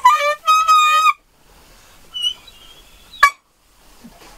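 Saxophone playing a short jazz phrase that ends on a held note about a second in. Then low room tone, with one short sharp blip near three seconds in.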